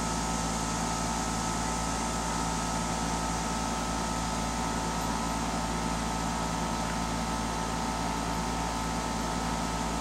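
Bryant 3-ton 13 SEER straight-cool condensing unit running steadily: its Copeland scroll compressor gives a clean, even hum with a few steady tones over the rush of air from the powerful condenser fan.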